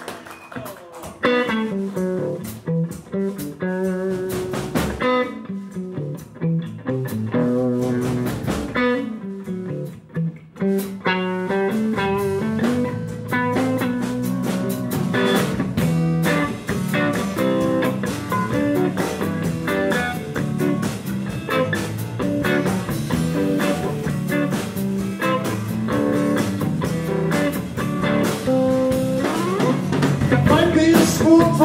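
Live blues band playing an instrumental opening on electric lead guitar and acoustic guitar with bass guitar and drums. It starts with sparse guitar phrases, and the full band settles into a steady blues groove from about halfway through.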